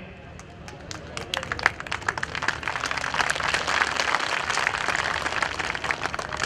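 Crowd applauding: scattered claps start about half a second in and build into dense clapping, thinning near the end.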